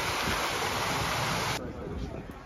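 Large public fountain's jets splashing into its stone basin, a steady rushing hiss. About one and a half seconds in it cuts off suddenly to a quieter open-air background.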